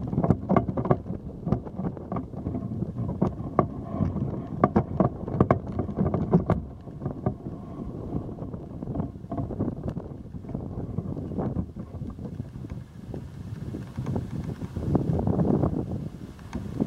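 Wind buffeting the microphone of a camera held up on a pole, a gusty low rumble that eases in the middle and picks up again near the end, with frequent small knocks and rattles from the pole being handled.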